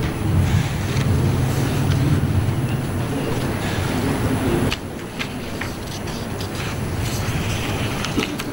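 A steady low rumble of background noise that drops in level a little over halfway through, followed by scattered light clicks and taps.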